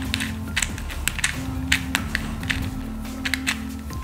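Irregular, quick plastic clicks of a 2x2 speed cube being turned by hand, over steady background music.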